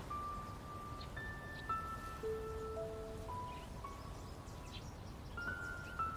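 Soft background music: a slow melody of single held notes, one after another at changing pitches.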